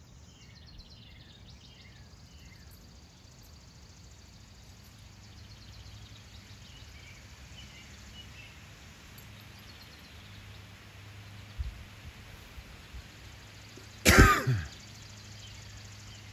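Faint bird chirps over quiet yard ambience, then, about fourteen seconds in, a loud, short throat-clearing cough close to the microphone.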